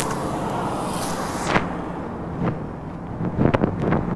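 A leg cast being taken off: a rasping, tearing noise for about a second and a half that then fades, followed by a few light clicks and knocks.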